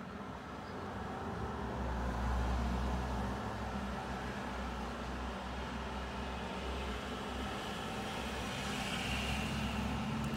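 Steady low rumble of road traffic, growing louder about two seconds in and then holding steady.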